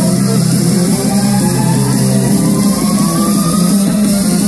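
Loud live band music with electric guitar and electronics, heard from the crowd. A rising sweep climbs steadily in pitch through it, building toward the next section.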